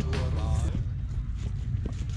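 Low wind rumble on the camera microphone, with faint voices in the background and a light tick near the end.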